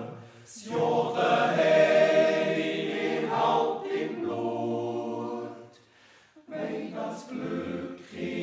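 Swiss male yodel choir singing a Jodellied a cappella in sustained, full chords. There is a brief pause for breath about six seconds in before the next phrase begins.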